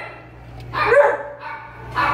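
A woman's brief, high-pitched coaxing voice about a second in, over a steady low hum.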